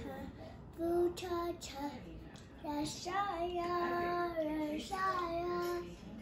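A young girl singing a made-up tune in short phrases, holding a long note from about three seconds in.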